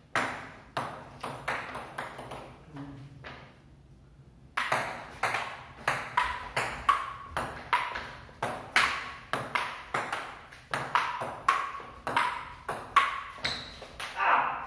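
Table tennis ball clicking back and forth between rubber paddles and a wooden table: a few hits, a pause of about a second, then a long rally at about two clicks a second.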